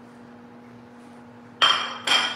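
A steady low hum, then near the end a single sharp clink of glass or dishware that rings briefly.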